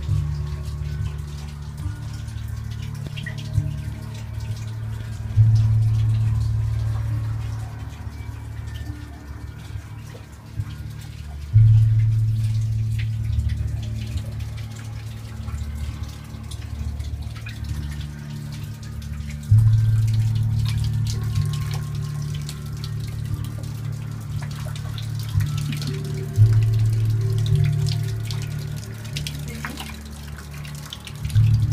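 A deep, droning ambient sound. A low swell comes in suddenly every six to eight seconds and slowly fades away, under a faint hiss.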